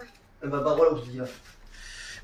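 A man's voice: a short spoken phrase, then a brief breathy hiss near the end.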